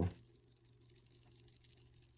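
The loose button covers of a Mous Limitless 5.0 case on an iPhone 14 rattling faintly as the phone is shaken by hand. The rattle is the sign that the case's buttons sit loose.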